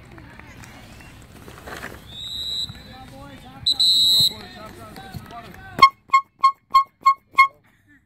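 Referee's whistle blown twice after a goal at a youth soccer game, a short faint blast then a loud one of about half a second. Near the end a sharp click is followed by six short beeps, about three a second, with the sound cutting out between them.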